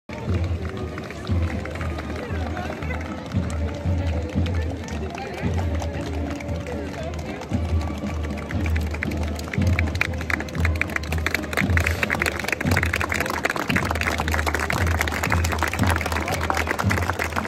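Music playing over a crowd of spectators with voices, and clapping that builds from about halfway through and keeps going as marchers pass.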